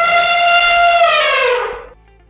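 Elephant trumpet call: one loud, high, horn-like note held steady, then sliding down in pitch and stopping just before the end.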